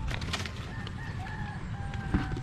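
A rooster crowing, drawn-out held notes, over a steady low rumble, with a few clicks in the first half second.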